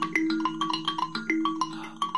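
Kalimba (thumb piano) with metal tines over a scooped-out gourd resonator, plucked by the thumbs in a quick, even run of ringing notes, about six or seven a second, with lower notes sustaining underneath.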